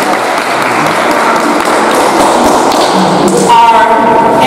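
Audience applauding, a dense spread of claps with crowd voices mixed in. A few seconds in, a held musical tone comes in over it.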